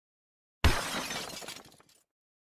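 Shattering-glass sound effect for a logo intro: a sudden crash about half a second in, then breaking and tinkling that dies away over about a second.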